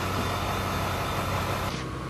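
Mobile truck crane's diesel engine running steadily as it holds a suspended shipping container. Near the end the sound drops slightly and the hiss above it thins out.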